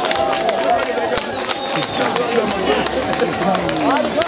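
A crowd of players and spectators shouting and talking over one another, with scattered sharp clicks.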